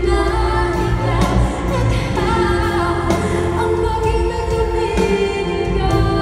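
A woman singing live into a microphone with band accompaniment, heard over a concert PA. Her melody moves through long held notes above a steady bass line.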